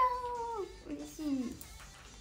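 A young woman's voice in a high, drawn-out cute tone: one long call held for most of a second, then two shorter calls that fall in pitch, ending about a second and a half in.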